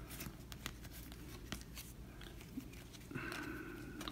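Faint ticks and rustles of glossy baseball cards being slid off a stack one by one with the thumbs.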